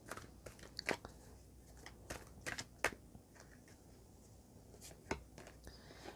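A deck of oracle cards being shuffled by hand: a few faint, scattered card flicks and slides, the last about five seconds in.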